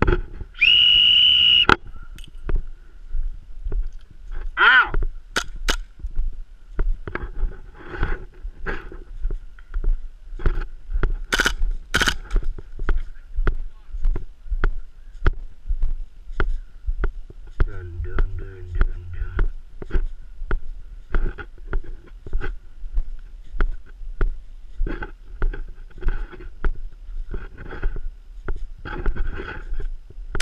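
A whistle blown once, a loud steady note lasting about a second and a half. It is followed by the steady footsteps of a player walking over dirt and gravel, about one step a second.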